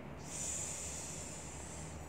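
A woman hissing a long, steady "sss": the letter S sound, made as a snake's hiss. It lasts nearly two seconds.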